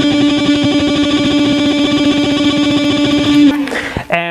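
Electric guitar tremolo picking: a single note picked up and down very fast and evenly. It stops about three and a half seconds in.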